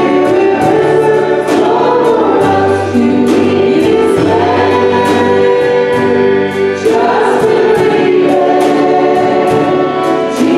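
A worship team singing a gospel song together, with a drum kit keeping a steady beat of about two hits a second under the voices.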